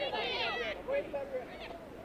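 A high-pitched voice calls out near the start, with fainter voices after it.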